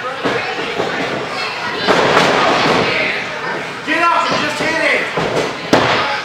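Heavy thuds of wrestlers' bodies hitting the ring mat, one about two seconds in and one near the end, over spectators yelling and shouting.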